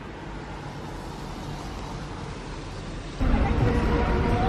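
Steady, low background hum, then about three seconds in a sudden switch to louder city street traffic noise.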